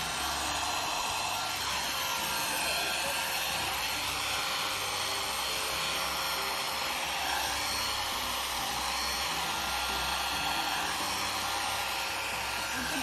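Electric livestock clippers running steadily as they are pushed against a heifer's thick coat. Their combs are blunt, so the clippers are not cutting the hair.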